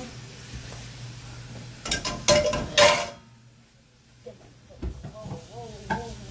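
A few sharp clattering knocks, loudest about two to three seconds in, over a steady low hum; a voice starts near the end.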